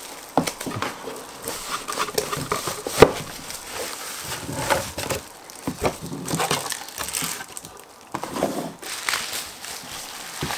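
Bubble wrap and plastic packaging crinkling and rustling as a boxed PC power supply is handled and lifted out of its cardboard box, in irregular crackles with a sharper tap about three seconds in.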